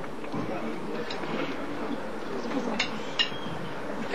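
A few light clicks about three seconds in, as mallet shafts knock together in the hands while a four-mallet grip is set up, over a faint murmur of voices.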